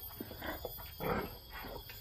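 Pigs giving two short, rough calls, about half a second and a second in: the noise pigs make when they expect their feed at feeding time.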